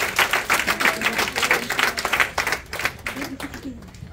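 Congregation applauding: dense, irregular hand clapping that dies down near the end.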